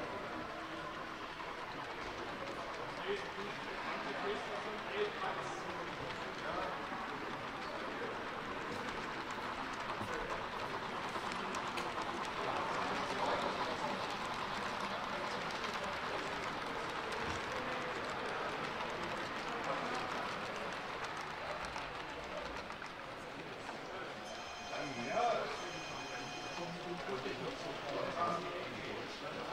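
Indistinct crowd chatter in a hall, a steady murmur of voices in which no words can be made out. About 24 seconds in, a short high-pitched tone sounds twice.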